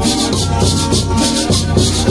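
Live folk string music: a violin and guitar play a lively tune, with a rattle shaken in a steady beat of about four shakes a second.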